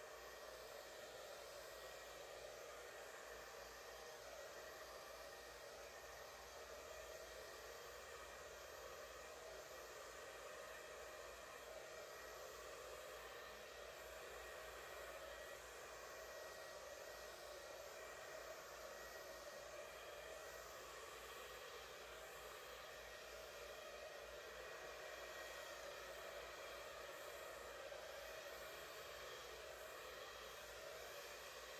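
A handheld hair dryer running steadily and faintly, blowing out wet acrylic paint across a canvas.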